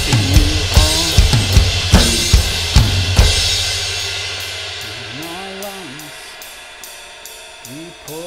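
Electronic drum kit played loudly, with kick, snare and crash hits on a steady beat, as a big ending. The playing stops a little after three seconds, leaving the cymbal sound to fade away slowly.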